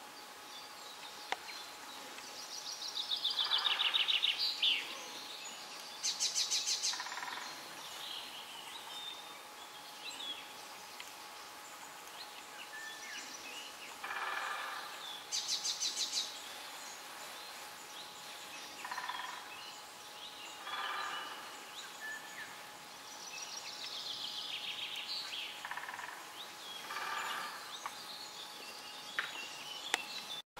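Several songbirds singing in short phrases: a falling trill about three seconds in and again near the end, quick runs of high notes twice in between, and scattered shorter calls.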